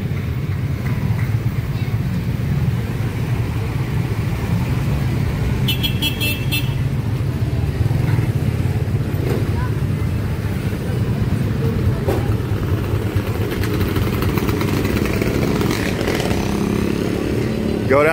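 Motorcycle engines running steadily in street traffic, with a short high toot about six seconds in.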